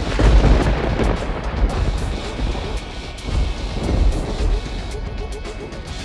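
Background music with rumbles of thunder: a deep roll right at the start and another about four seconds in.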